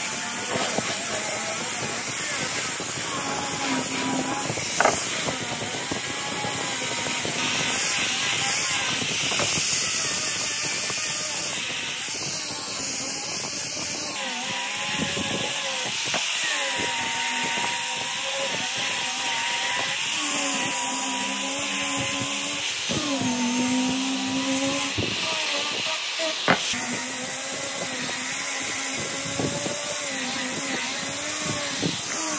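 Electric angle grinder with a sanding disc running while it sands wood: a steady motor whine over abrasive hiss, the pitch dipping and wavering as the disc is pressed and moved along the board. A couple of sharp ticks stand out, one about five seconds in and one near the end.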